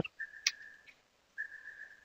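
A faint, steady, high-pitched whine on one tone, heard in two stretches with a short gap near the middle, and a single short click about half a second in.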